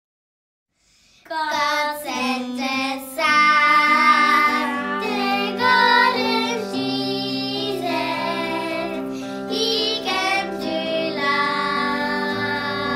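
Three young children singing a song together, starting about a second in after a brief silence.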